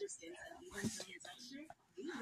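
A young girl whispering softly to herself, a faint breathy murmur without clear words.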